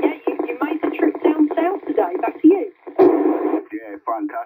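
A voice received over a 27 MHz CB radio on FM: thin, narrow-band speech from the radio's speaker, with a short burst of noise about three seconds in.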